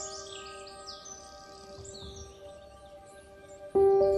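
Ambient background music: held, bell-like notes slowly fade under short, high, bird-like chirps. Just before the end a new, louder note is struck and a rising run of notes begins.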